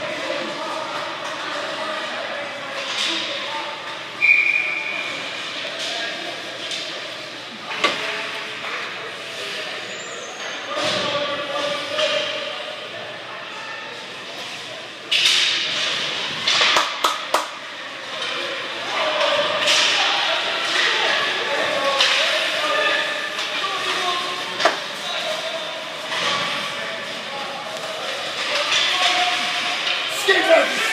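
Hockey-arena ambience: spectators chattering in a large echoing hall, broken by a few sharp knocks of puck and sticks against the boards, with a quick cluster of them about halfway through.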